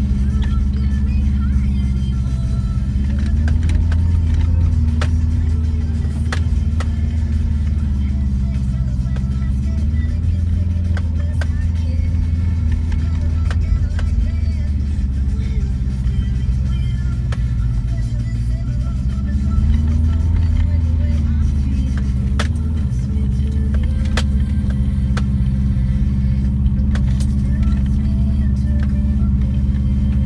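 Subaru Forester's flat-four engine heard from inside the cabin, pulling steadily up a steep dirt track, its pitch rising a few seconds in and again about two-thirds through as the throttle changes. Occasional sharp knocks and rattles from the car jolting over the rough ground.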